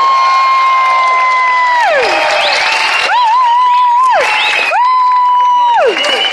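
Audience cheering and applauding at the end of a live song, with three long high whoops, each held and then falling in pitch.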